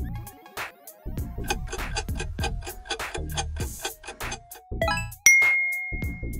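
Upbeat quiz background music with a steady beat, then a quick rising run of chimes and a loud bell ding about five seconds in, its tone held. The ding is the time-up signal ending the question countdown as the answer is revealed.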